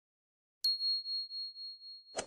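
Notification-bell ding sound effect from a subscribe-button animation. A single high bell strike comes about half a second in and rings on with a slight wavering, slowly fading.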